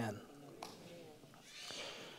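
A man's voice trailing off at the start, then a quiet pause in a hall with a few faint ticks and a soft hiss near the end.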